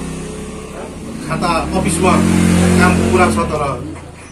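A motor vehicle engine running close by, a low steady drone that comes up about two seconds in and stops shortly before the end, under a man's speech.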